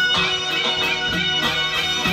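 Live traditional folk music: a reedy wind instrument plays a held, ornamented melody over a steady drum beat of about two strokes a second.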